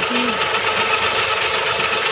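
Cylinder boring machine running with its rotating cutter head inside an engine block's cylinder bore, boring the cylinder; a steady, even machine noise throughout.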